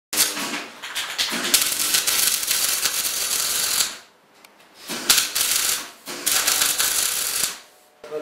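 Angle grinder grinding the sheet-steel body of a wood-burning stove, a harsh rasping in three runs: a long one, then two shorter ones after breaks about four and six seconds in.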